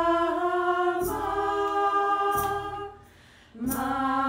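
A cappella vocal music: sung notes held a second or more each, moving between pitches, with a brief pause about three seconds in.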